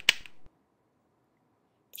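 A quick run of sharp clicks, about ten a second, which stops about half a second in.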